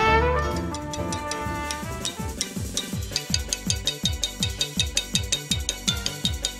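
A trumpet holds a note over keyboard chords that fades out in the first two seconds. Then an electronic drum beat takes over, with a kick about three times a second and high ticks above it.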